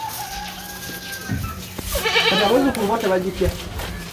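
A black-and-white cow giving a high, bleat-like cry, the call its owner's video likens to a human baby crying. One call is held for about a second at the start, and a louder, wavering call follows about two seconds in.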